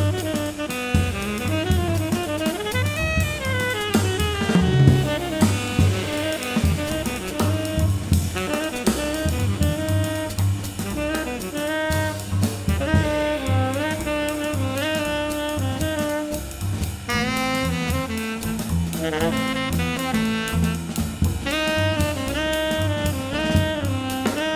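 Live jazz trio playing: a tenor saxophone plays melodic phrases over upright bass and a drum kit with cymbals.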